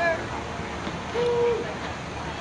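A person's voice calling out one short held note on a steady pitch, like a hoot, a little after the middle, over faint outdoor chatter.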